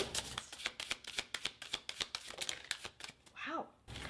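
A deck of oracle cards being shuffled by hand: a rapid, irregular run of soft card clicks that stops about three seconds in. A brief faint murmur of voice follows near the end.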